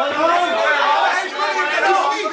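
Several voices talking and calling out over one another close by: ringside spectators' chatter, with no punches standing out above it.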